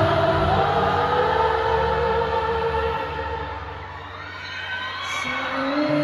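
Live arena concert heard from within the crowd: a slow sung melody with long held notes over bass, with the crowd cheering and singing along. The music thins and drops quieter about four seconds in, then a louder sung line comes back near the end.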